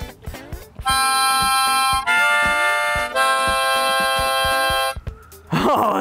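Harmonica played as three held chords, the first two about a second each and the last nearly two seconds. The playing starts about a second in and stops shortly before the end.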